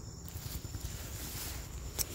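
Footsteps and rustling through grass and leafy ground cover as someone walks, over a steady high-pitched cricket trill.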